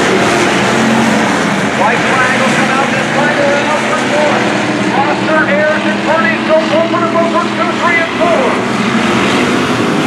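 Several hobby stock race cars' engines running at racing speed around a dirt oval, a steady mass of engine noise.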